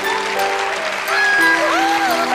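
Audience applauding, with a few cheers, over background music. The clapping grows slightly louder about a second in.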